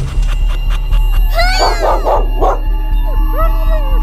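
Cartoon dog yelping, about four quick, high yelps a little over a second in, over background music with a steady low beat.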